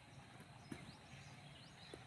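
Near silence: quiet outdoor ambience with a few faint high chirps, likely birds, and two soft clicks.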